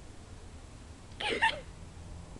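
A dog giving one short, high whine, a little over a second in.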